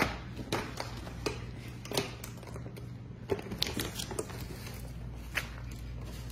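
Irregular crinkles and clicks of a plastic clamshell salad container being handled, with the rustle of loose salad greens picked out and dropped into a cardboard pizza box.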